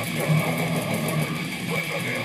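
Distorted electric guitar playing a fast, rapidly picked death metal riff, heard through a low-quality webcam microphone.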